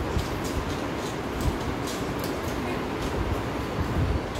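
Scattered light clicks of plastic pyramid and cube twisty puzzles being turned, over a steady low rumble.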